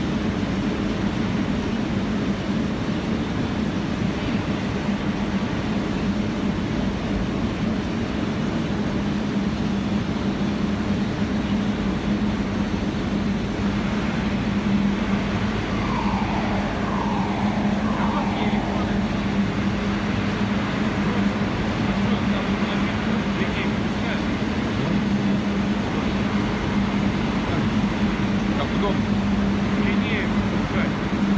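Electric arc furnace running on UHP 400 mm graphite electrodes: a loud, steady roar of the arcs with a strong low hum. Partway through, three short falling tones sound one after another.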